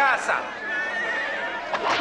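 A crowd of voices shouting over one another, with one long high cry held for about a second in the middle.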